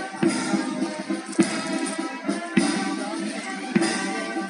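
Silver (brass) band playing a march, with a drum beat about every second and a bit.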